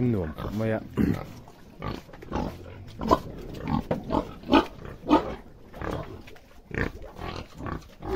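Domestic pigs grunting in a string of short grunts.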